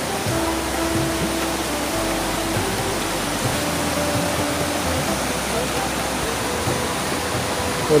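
A river in flood, swollen and muddy, rushing past: a steady, even wash of water noise that holds at one level throughout.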